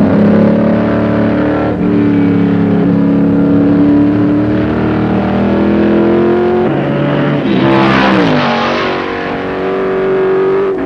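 Lola T70 coupe's V8 racing engine heard from the cockpit at speed, its pitch climbing slowly in each gear with gear changes about two seconds in and again near seven seconds. Near the end the pitch falls as the car slows, with a brief rush of hiss around eight seconds.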